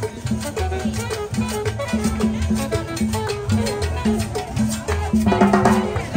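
Live Latin band playing upbeat salsa-style dance music, with a plucked upright bass line under a melody and steady percussion.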